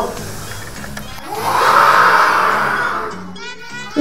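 A group of children breathing out hard in a breathing exercise: one long hiss of breath that swells and fades over about two seconds, under background music.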